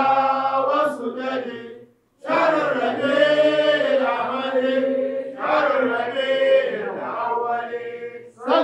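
Arabic devotional qasida chanted by a male voice in long melodic phrases, with a short break about two seconds in and a breath pause near the end.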